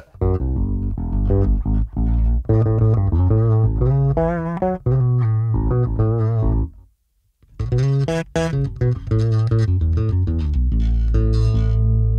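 Epiphone Newport short-scale electric bass played: a run of plucked notes with the tone control rolled fully off, giving a filter-like sound almost like modulation. A short break just past halfway, then more notes ending on a held note.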